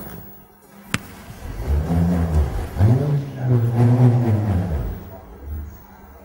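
Bullroarer, a flat strip whirled round on a string, humming with a low pitch that swells and sweeps up and down about once a second, fading near the end. A short click comes about a second in, before the hum builds.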